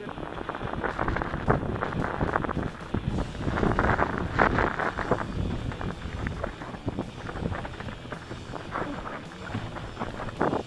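Mountain bike descending a rocky trail: a continuous clatter and rattle of tyres over loose stones and the bike's parts shaking, loudest about halfway through. Wind is on the microphone.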